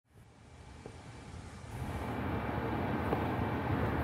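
Jeep Gladiator driving, heard from inside the cab: a low, steady rumble of engine and road noise that fades in from silence over the first two seconds.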